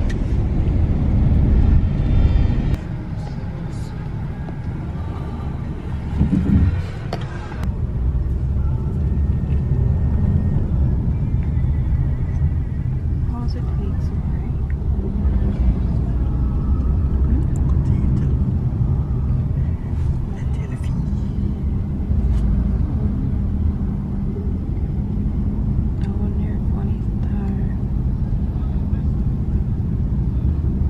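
Steady low rumble of road and engine noise heard from inside the cabin of a moving passenger van.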